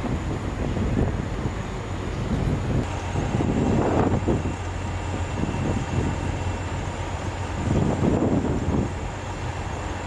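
Diesel engines of a line of parked semi trucks idling, a steady low hum and rumble.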